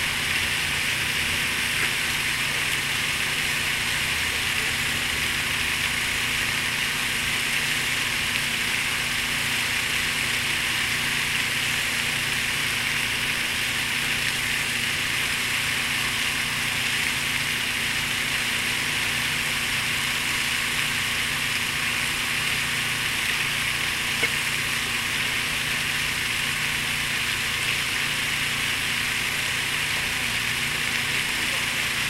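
Large park fountain running, its water jets falling into the pool as a steady rushing hiss, with a faint steady low hum beneath.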